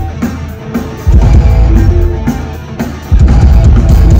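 Punk rock band playing live: distorted electric guitars, bass and drum kit in an instrumental passage with no vocals. Heavy accented hits land about every two seconds, each ringing out and fading before the next.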